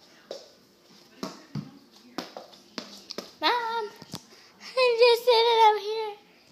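A small ball knocking and bouncing on a hardwood floor, several separate sharp taps. From about three and a half seconds in, a child's high-pitched drawn-out vocal sounds come in, loudest near the end.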